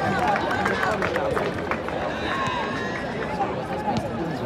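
Football spectators' voices mixing into a steady crowd babble, with individual calls and shouts rising out of it and a few short knocks.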